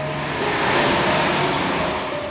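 An air-cooled Porsche 911 convertible driving past: a rush of engine and tyre noise that swells towards the middle of the pass.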